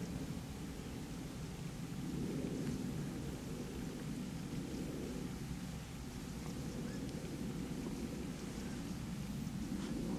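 Wind buffeting the camera microphone: a low, steady rumble that swells a couple of seconds in and eases a little past the middle.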